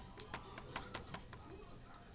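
Budgie nibbling at a person's finger: its beak makes a quick, irregular run of small clicks that thins out in the second half.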